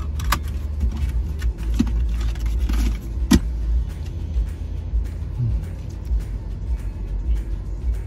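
Steady low rumble of a car's cabin, with scattered small clicks and one sharper click a little over three seconds in.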